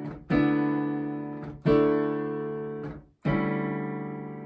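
Digital piano playing three sustained chords in D, each struck and left to ring and fade before the next.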